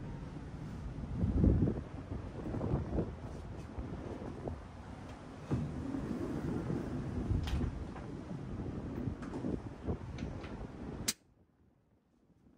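Wind buffeting the microphone on a ship's balcony at sea, a low gusty rumble that is loudest about a second and a half in, with a few light knocks. It cuts off abruptly near the end.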